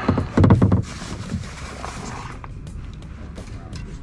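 Kayak paddling: a loud knock against the plastic hull about half a second in, then water splashing off the paddle blade, with small drips and clicks after.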